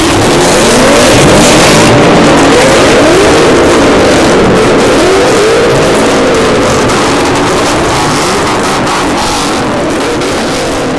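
Car engine revved repeatedly, its pitch rising and falling with each blip of the throttle.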